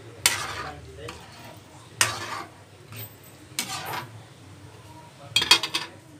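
A ladle stirring sardines in sauce and scraping the bottom of an aluminium pan: three separate scraping strokes about a second and a half apart, then a quick rattle of clinks near the end.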